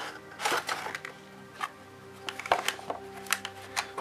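A cardboard box and its clear plastic tray being handled as a model railway coach is slid out: a rustling scrape about half a second in, then scattered light clicks and taps, over soft steady background music.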